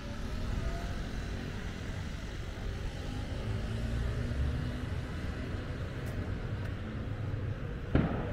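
Steady low rumble of road traffic: a motor vehicle running, its faint engine note swelling a little midway.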